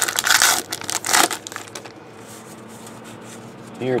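Trading cards rustling and crinkling as they are handled, with two loud bursts in the first second and a half, then only a faint steady hum.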